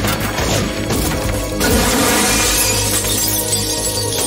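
Background music over a sudden crash of breaking glass about one and a half seconds in, the shattering trailing off over the next second or so.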